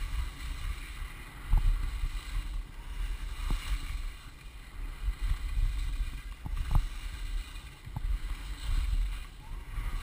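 Skis sliding and scraping over packed snow on a downhill run, with wind rumbling on the microphone and a few short knocks.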